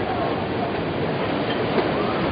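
Tsunami floodwater pouring over a sea wall: a steady, loud rushing of water.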